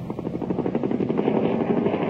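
Propeller aircraft engines running with a fast, even pulse, getting louder.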